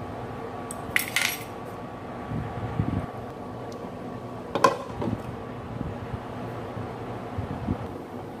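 Metal chopsticks clinking against a stainless steel pot of braising chicken. About four and a half seconds in comes the loudest sound, a ringing clink as a glass pot lid is set on, followed by a smaller knock. A steady low hum runs underneath.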